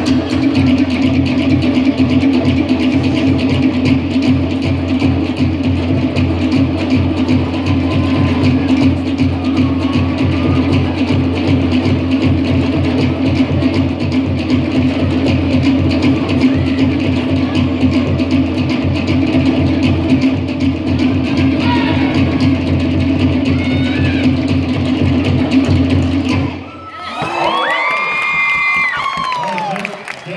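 Fast Tahitian drumming for an ori tahiti dance: a rapid, even beat over a steady low tone. It cuts off suddenly near the end, and the crowd cheers and whoops.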